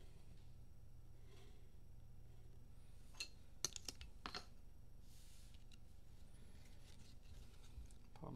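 Quiet handling of trading cards and rigid plastic card holders: a few sharp clicks and taps about three to four and a half seconds in, with faint sliding rustles, over a low steady hum.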